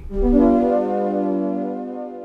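A sustained chord played on a HALion Sonic 7 synth patch built from detuned multi-oscillator voices with tube-drive distortion and a long decay, with an LFO pushed to a high depth on pitch. It starts with a low thump and fades slowly.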